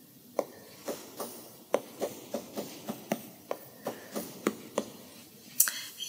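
Stylus tip tapping and stroking on an iPad's glass screen: a run of light, irregular taps, about two or three a second.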